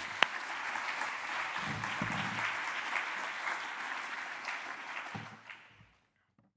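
Audience applauding steadily, then fading out near the end.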